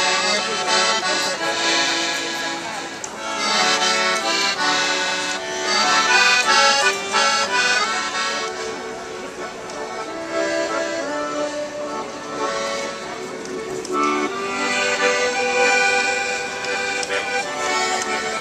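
Piano accordion played as a tune, melody and chords moving from note to note without a break.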